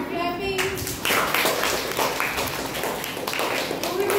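A classroom of children clapping together, a round of applause that starts about half a second in and lasts roughly three seconds, after a few children's voices.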